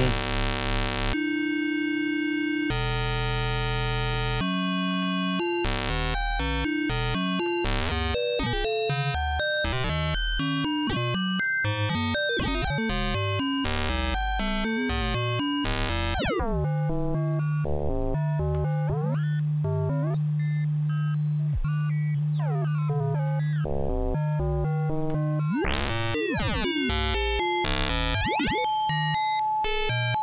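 Software modular synthesizer oscillator (VCV Rack VCO) being frequency-modulated at audio rate by another oscillator, giving clangorous pitched tones. The notes step in blocks for the first few seconds, then shift quickly with pitch glides. About halfway through it settles on a steady low drone under sweeping high tones, has a fast rising sweep near the end, and ends on a steady high tone.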